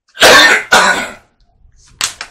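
A man coughing twice in quick succession, loud and harsh.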